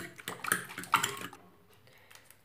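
A utensil stirring a runny egg-and-milk batter in a ceramic bowl: wet sloshing with clinks against the bowl, loudest twice about half a second and a second in, stopping after about a second and a half.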